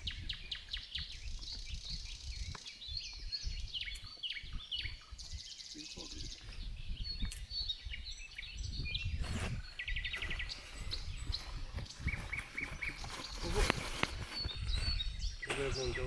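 Wild birds singing and chirping in woodland: many short high chirps and whistles, a rapid trill about ten seconds in and a short series of evenly repeated notes soon after, over a low outdoor rumble.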